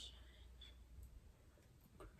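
Near silence: room tone with a few faint clicks from small things being handled on the table, the first right at the start and a couple more about a second in.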